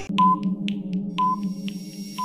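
Quiz countdown-timer sound effect: a short ping about once a second with faint ticks between, over a steady synthesizer drone.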